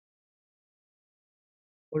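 Near silence: dead quiet between the lecturer's words, with speech starting just at the end.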